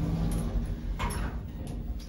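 Otis Gen2 elevator car doors sliding shut: a steady low hum from the door drive that stops shortly after the start, then a single clunk about a second in as the door panels meet.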